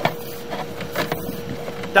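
Sewer inspection camera rig: a steady faint high hum from the equipment, with a few scattered light clicks and knocks as the camera head moves in the pipe.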